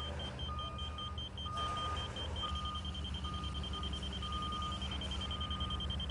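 Stabila laser receiver beeping as the laser's slope is steered down toward grade: a fast high-pitched beeping with a lower beep about once a second. The beeping means the beam is not yet on grade; an even tone marks on-grade.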